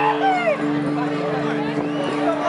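The live band holds a sustained chord while audience members whoop and call out over it, with the loudest calls in the first half-second.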